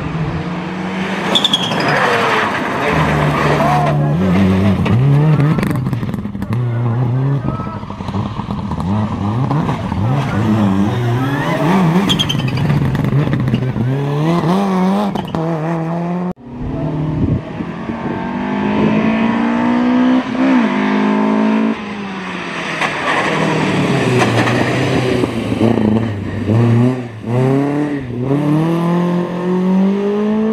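Rally car engines run hard through the gears, the pitch climbing and dropping back at each shift. The sound cuts abruptly about halfway through to another car doing the same.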